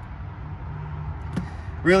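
Steady low hum of the boat's Ilmor 7.4-litre V8 inboard running at idle, with a single short click about one and a half seconds in.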